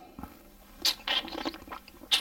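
A person sipping wine from a glass: a short hissy slurp about a second in, then softer mouth noises as the wine is worked around the mouth.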